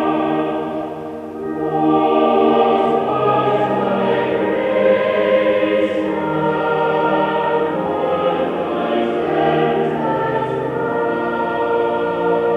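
Recorded choral music: a choir singing slow, long-held notes.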